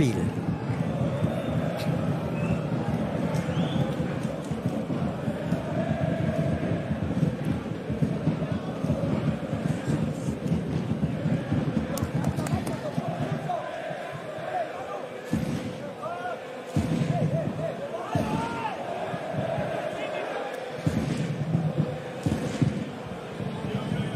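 Football stadium ambience: a crowd of supporters singing and chanting steadily, with scattered shouts and occasional sharp thuds of the ball being kicked.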